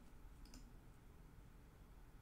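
Near silence: room tone, with a faint click about half a second in.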